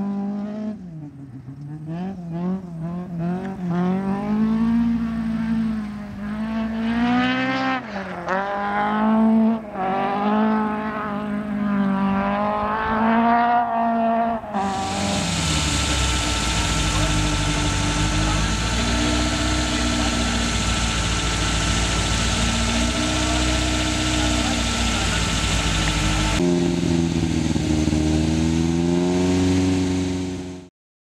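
Toyota Celica RA40 rally car's engine revving hard, its note climbing and dropping again and again as it drives through the gears. About halfway through, the sound cuts abruptly to a steadier, hissier drone with a slowly wavering pitch.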